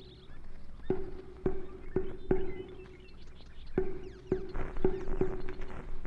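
Pitched percussion struck in quick groups of four strokes, each stroke ringing briefly at the same low note, with birds chirping faintly in the background.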